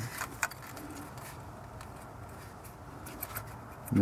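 A few light clicks of fingers handling a plastic ignition coil and its connector in the first half-second, then a low steady background hiss with a couple of faint ticks near the end.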